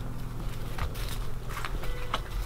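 Footsteps through tall dry grass, with scattered rustles and crunches over a faint steady low hum.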